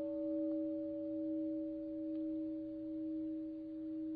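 A struck Buddhist bowl bell ringing on between chanted lines: one steady low tone with a fainter higher overtone, wavering slowly in loudness as it fades.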